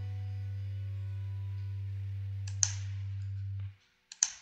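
Steady low electrical hum made of a stack of even tones, with a single click about two and a half seconds in. The hum cuts off suddenly near the end.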